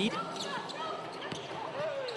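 A basketball being dribbled on a hardwood court, a few bounces in a row.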